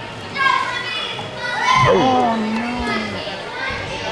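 Children's voices chattering and calling out over one another in a gym hall, loudest about two seconds in.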